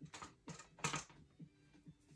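A quick run of light clicks and knocks, like small objects being handled and set down, bunched in the first second or so.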